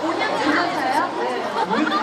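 Speech only: a woman talking into a handheld microphone, with other voices chattering over and behind her.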